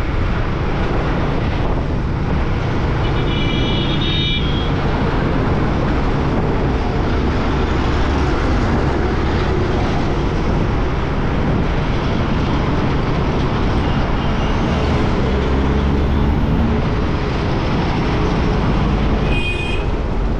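Motorcycle riding through city traffic, heard from the rider's camera: steady engine and road noise with wind rushing over the microphone. Two brief high beeps sound, about three seconds in and again near the end.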